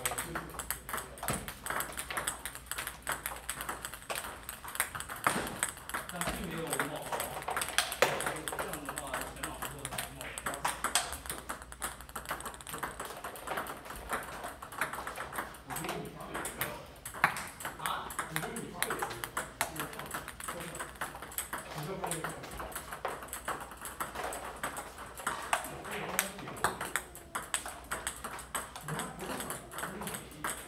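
Table tennis balls clicking off paddles and the table in a multiball drill: a rapid, steady stream of sharp plastic ball impacts, a ball fed and hit back over and over.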